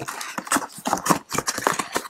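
A trading-card blaster box being opened and its foil-wrapped packs slid out by hand: a quick, irregular run of crinkles, rustles and small clicks of packaging.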